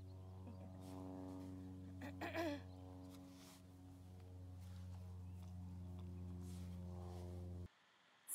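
A border collie gives one short vocal call about two seconds in, falling in pitch, over a steady low hum that cuts off just before the end.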